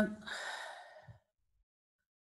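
A woman's breathy exhale into a video-call microphone, lasting about a second, right after the end of a short 'um'. Then silence.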